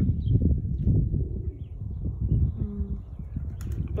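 Pigeons fluttering and flapping their wings as they take off and land around a feeding flock, over a low, uneven rumble.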